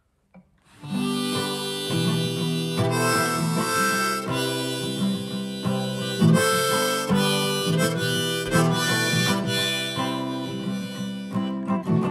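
Harmonica playing a melody over acoustic guitar, starting about a second in.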